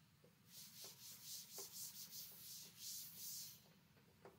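A chalkboard being wiped clean by hand, a faint run of quick hissing rubbing strokes, about three a second, lasting roughly three seconds, with a few light taps.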